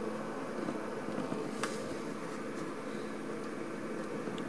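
Steady hum of a running projector's cooling fan, with a single faint click about one and a half seconds in.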